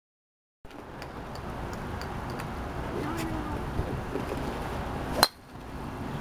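Steady outdoor background noise with faint distant voices, then one sharp, loud crack about five seconds in.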